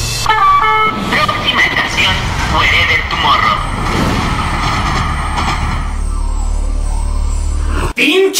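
Subway-themed intro sound design: a short run of chime tones, then a voice over the steady low rumble of a metro train, which cuts off just before the end.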